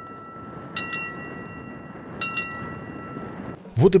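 A small hand-rung bell on a post, ringing the ceremonial last bell for the end of the school year. It is still ringing from an earlier stroke, then is struck twice more about a second and a half apart, each clear, several-toned ring dying away.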